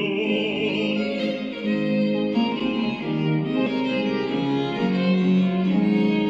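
Classical music: a male opera singer's phrase ends about a second in, and a bowed string ensemble plays on.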